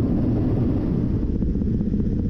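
Military helicopter in flight, heard from on board: a steady low rumble of engine and rotor, with faint regular beating in the second second.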